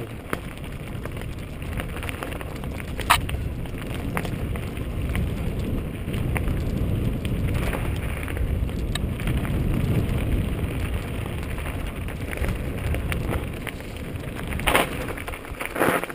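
Mountain bike riding down a dry dirt singletrack: a steady low rumble of tyres and jolting over the trail, with a few sharp rattling knocks from the bike over bumps, the clearest about three seconds in and near the end.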